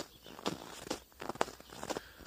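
Bare feet walking on snow, short steps about every half second.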